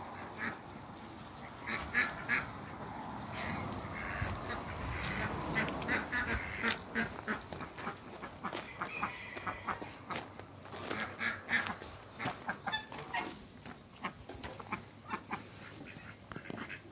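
Domestic ducks quacking in short, irregular calls throughout, coming thicker and quicker in the second half.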